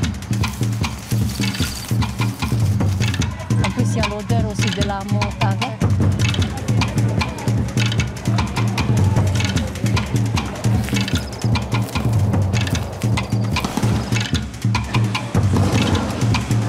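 Music with a steady bass line and a busy percussion beat, with a voice heard briefly about four seconds in.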